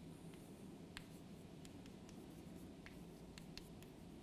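Chalk writing on a chalkboard: faint, scattered taps and short scratches of the chalk strokes.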